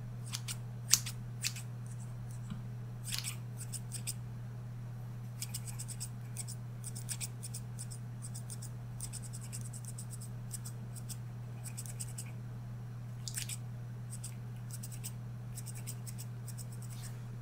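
Metal scissors snipping close to the microphone in quick runs of several snips, the loudest about a second in, over a steady low hum.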